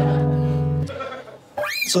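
A strummed guitar chord ringing out steadily, then stopping a little under a second in. It is followed near the end by a short vocal sound that rises and falls in pitch.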